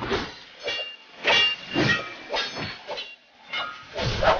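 A theatre audience cheering in irregular bursts, with high-pitched screams and whistles.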